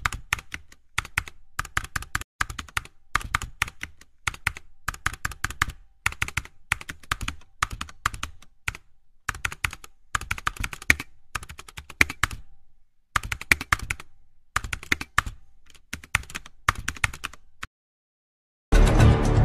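Computer keyboard typing sound effect: runs of rapid clicks broken by short pauses.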